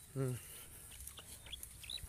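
A man's short "hmm", then a few faint, brief high chirps from birds in the second half.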